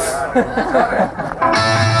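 A voice speaks briefly, then about one and a half seconds in a rock band's electric guitar and bass guitar come in together, starting a song with a strong low bass.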